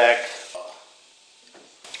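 A spoken word, then a quiet stretch, then a single short knock near the end as a tongue-and-groove pine board is clamped to a plywood workbench with a steel C-clamp.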